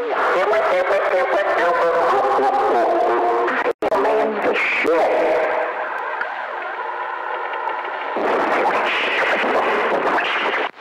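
A man's voice coming over a CB radio, run through echo and voice-changer effects so that the words are hard to make out. The signal drops out for an instant about four seconds in, and the voice sounds thinner and more drawn out for a few seconds after that.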